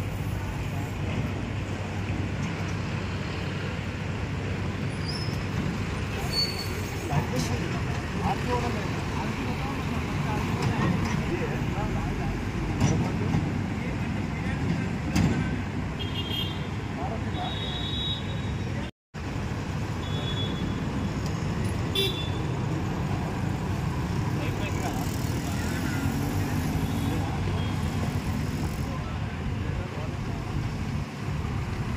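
Busy street traffic with a steady rumble of passing motorcycles and cars, and people talking nearby. A few short vehicle horn toots sound around the middle. The sound cuts out for an instant about two-thirds of the way through.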